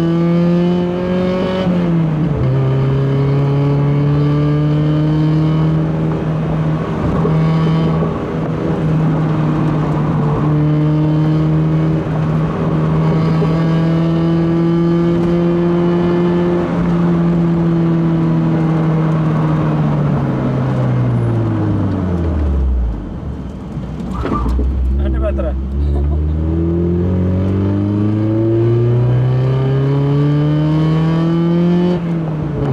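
Mazda Miata MX-5 NA's four-cylinder engine heard from inside the cabin at track speed. The pitch drops sharply about two seconds in at a gear change, then holds steady for a long stretch. From about twenty seconds it falls away as the car slows, briefly blips a few seconds later, and climbs again under acceleration near the end.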